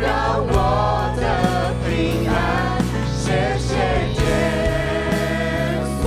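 A worship band performing a Mandarin Christian song: several voices singing the melody together over band accompaniment, with a long held note in the second half.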